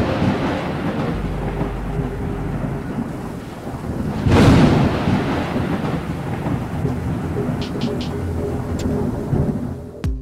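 Thunder over steady rain: a loud thunderclap right at the start and another about four seconds in, each dying away slowly, with faint music underneath.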